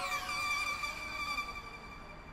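Background music of a highlights video: a held electronic chord with falling sweeping tones, fading out.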